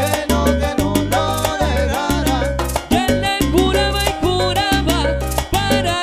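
Salsa music from a live band, playing loudly: a bass line in short repeated notes under busy percussion and quick melodic lines.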